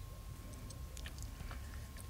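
Faint, scattered crackles and ticks over a low steady rumble: an aloo paratha roasting dry on a hot tawa before any oil is added.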